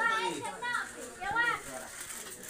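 People's voices in a small room: two short, high-pitched spoken calls, one at the start and one just past the middle, with quieter murmur between.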